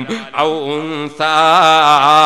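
A man's voice chanting a recitation in long, wavering held notes. He starts about half a second in, breaks briefly at about a second, then holds a louder note.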